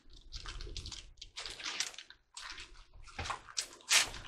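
Thin Bible pages rustling as they are handled and turned, a string of short, irregular papery rustles, with a cough right at the end.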